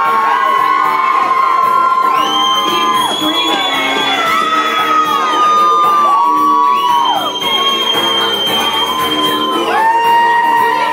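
Loud music in a large room, with a crowd shouting and whooping over it; long high cries swoop up and down across the music.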